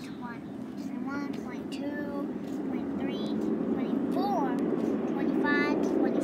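A steady low engine rumble, like a passing vehicle, growing gradually louder, with short high-pitched voice sounds over it.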